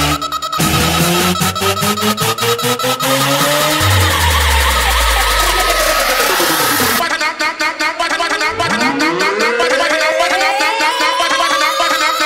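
Electronic dance music being mixed live by a DJ on CDJ decks and a mixer, full of effects: a brief cut right at the start, stuttered repeats, and a long downward sweep a few seconds in. About seven seconds in the bass drops out suddenly, leaving a fast, high stuttering pattern with rising glides that builds toward the end.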